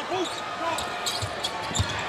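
Basketball arena crowd noise during live play, with a basketball being dribbled on the hardwood court, a couple of bounces in the second half.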